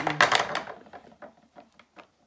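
A short loud rustle of noise, then a run of light, irregular taps and clicks as craft supplies are handled on a desk.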